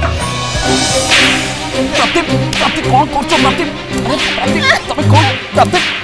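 Dramatic background score: a row of swishing whooshes about once a second over low held notes, with a melody of sliding notes coming in about halfway.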